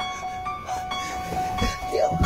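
A sustained eerie drone of several held tones, like a horror-film soundtrack, with a few low thuds underneath.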